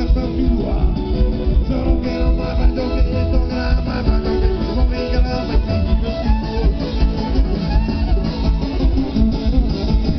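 Live band playing an instrumental passage of a fast song: plucked string instruments leading over a steady beat.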